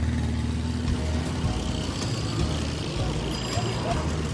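Street traffic sound effect: motor vehicles running with a steady low rumble as a parcel-laden scooter rides along with the traffic.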